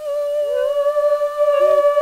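Humming: one voice holds a long, steady high note, while another slides up into it about half a second in and hums a brief lower note a little later.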